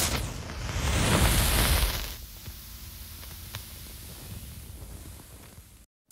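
A sudden burst of noise that swells for about two seconds, then fades to a low rumble with a few scattered crackles, cutting off near the end.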